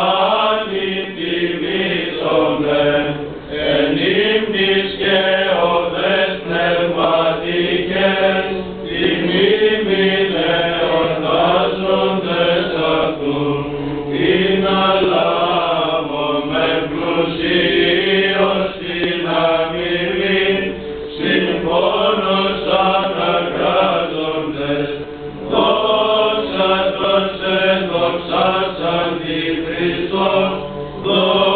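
Greek Orthodox Byzantine chant, sung without pause: a melodic line that winds up and down over a steady, low held drone note (the ison).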